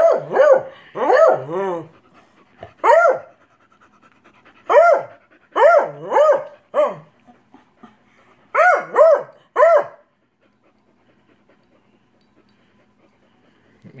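A beagle barking in short, high-pitched barks, about a dozen in bunches over roughly ten seconds. It is jealous, protesting while the other dog is being petted.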